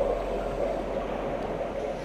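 Steady rushing of water drawn through the diver's suction vacuum head on the tank floor, with a low hum underneath.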